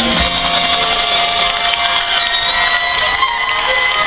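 Marching band and front ensemble playing a long held chord of several steady tones, the notes shifting a little near the end.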